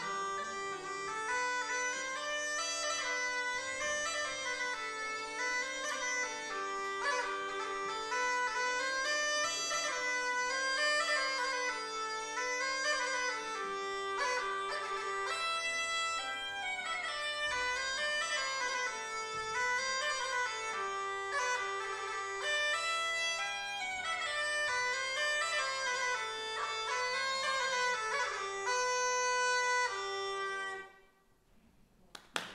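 Bagpipe playing a tune: a melody that steps up and down in quick notes over a steady drone.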